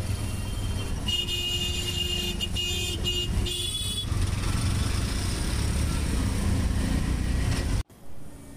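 Auto-rickshaw engine running in city traffic, heard from inside the open cabin as a steady low rumble. Vehicle horns sound several times from about one to four seconds in. The traffic noise cuts off suddenly just before the end.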